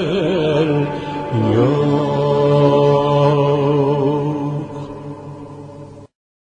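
A singer's closing phrase of a Turkish art music song in makam Hicaz: quick wavering ornaments, a downward glide, then one long held final note that fades away near the end.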